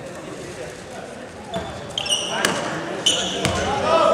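Basketball bounces and sneaker squeaks on a hardwood gym floor during a free throw, with voices in a large hall. Two short high squeaks come about two and three seconds in, each followed by a sharp thud of the ball. Shouting grows louder near the end.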